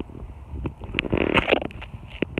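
Tomato leaves and stems rustling and crackling as they brush against a handheld camera, a run of sharp clicks with a louder rustle about a second in.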